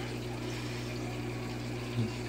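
Steady bubbling and running-water noise from an aquarium's air bubble curtain, over a low steady hum.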